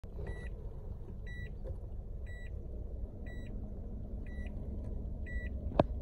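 A vehicle's reverse warning beeper sounding a short high beep about once a second, six times, over the low rumble of the car's engine as it backs up. A sharp click near the end.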